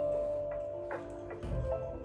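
Background instrumental music: soft held notes in a mid register, a new note starting about every half second.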